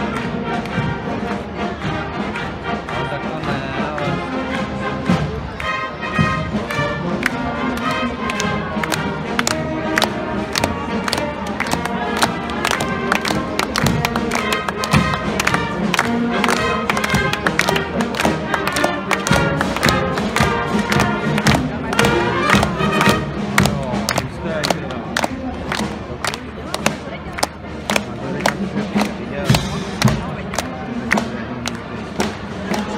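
Marching brass band playing a march, with regular, sharp drum strikes.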